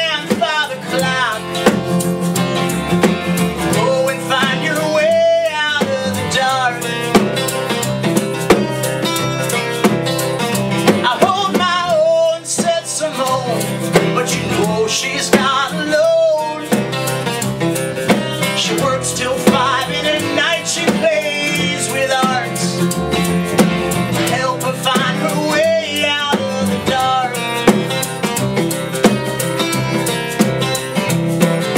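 Acoustic band playing a country-blues song: two strummed acoustic guitars, upright bass and a snare drum, with a man singing lead.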